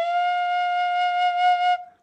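Chieftain tin whistle in C playing one long held note with vibrato, fading out near the end.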